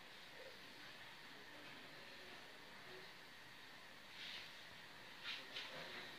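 Near silence: a faint steady hiss of baghrir batter cooking over low heat in a pan, with a few soft crackles near the end as the batter bubbles.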